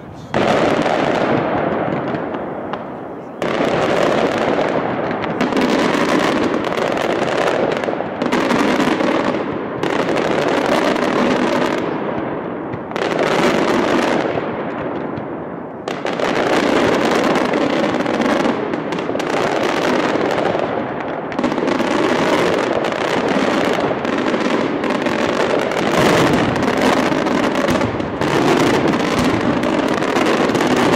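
Aerial mascletà by Pirotecnia Valenciana: a loud, dense, continuous barrage of firework shells and salutes bursting overhead. There are short lulls about three seconds in and again around sixteen seconds, each followed by a fresh surge of bangs.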